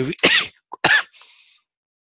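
A man coughing and clearing his throat: two short coughs, the louder one about a second in, trailing off into a breath.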